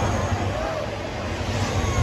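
Gas flame burning from the top of an outdoor fire tower, a steady low rumble, with crowd voices over it.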